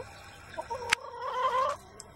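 A chicken giving one drawn-out, wavering call lasting about a second, with a short rising chirp just before it. A single sharp click lands near the middle of the call.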